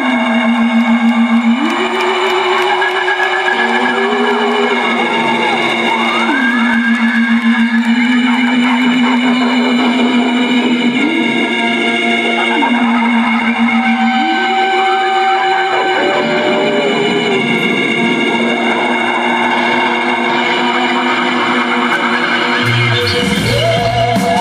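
Live trip-hop band music with no singing: a lead melody glides between long held notes with a wavering vibrato, over steady sustained chords. A deep bass comes in near the end.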